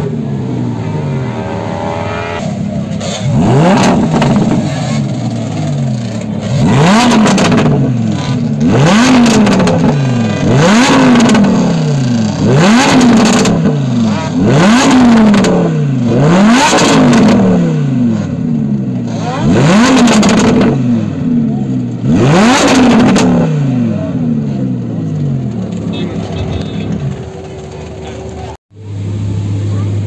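Lamborghini Huracán's V10 engine being free-revved while the car stands still: about ten sharp blips, roughly every two seconds, each climbing fast and falling back slowly. Between and after the blips it idles steadily. Near the end the sound drops out briefly and then returns.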